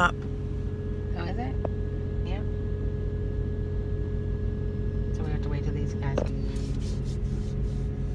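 Steady low engine hum with a few held tones, heard from inside a car cabin.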